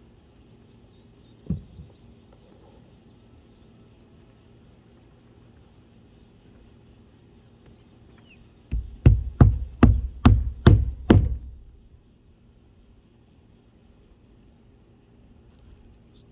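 Claw hammer driving a roofing nail through rolled asphalt roofing into the roof deck: a single knock, then about seven quick blows in a row, roughly three a second, about nine seconds in.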